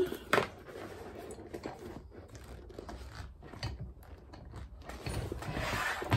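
Hand-operated rivet press setting 7 mm rivets through a cork bag's strap connector, with one sharp click about a third of a second in. Quieter clicks and rustling follow as the cork bag is handled and turned.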